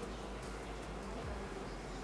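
A steady low buzzing hum, with faint rustles and scrapes as black rubber straps are pulled and woven through a wooden chair frame by hand.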